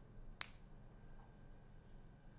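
Near silence, room tone with a faint hum, broken by one short, sharp click a little under half a second in.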